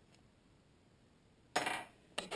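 A threaded steel rod is lifted out of a metal bench vise, giving one short metallic clatter near the end after a quiet stretch.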